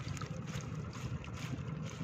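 Wind rumbling on the microphone over light water splashes and drips, with many small ticks, as a woven bamboo fish trap is lifted and emptied over a foam box in shallow flood water.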